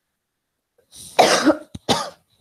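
A woman coughing: one longer cough about a second in, then two short coughs close together near the end.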